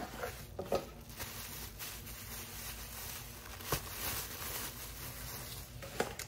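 Quiet rustling and scraping of a cardboard box and its packing as a glass honey dipper is taken out, with a couple of faint clicks.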